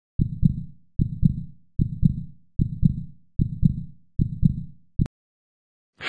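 Heartbeat: steady lub-dub double beats, about 75 a minute, six full beats with a seventh cut short about five seconds in.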